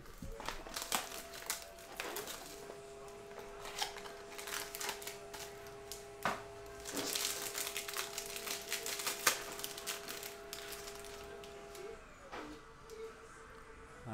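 Foil trading-card pack being torn open and crinkled by hand: a dense run of crackling rustles that dies down shortly before the end.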